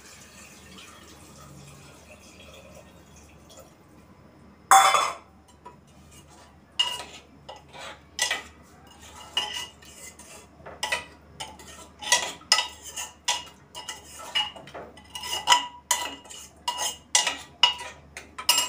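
Metal spoon stirring curry in a pressure cooker, clinking again and again against the pot's metal side with a short ringing tone, one or two knocks a second. A faint pour of water comes at the start, and one loud metal clatter about five seconds in.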